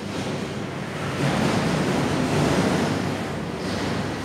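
Rushing noise of wind on the microphone, swelling about a second in and easing near the end.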